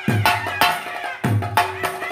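Kerala ritual percussion: chenda drums with hand cymbals playing a fast, driving rhythm. Deep drum strokes land about every second and a quarter, with rapid sharp strokes between them and a ringing tone held underneath.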